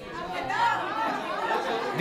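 Several people talking over one another in a room: a group's overlapping chatter.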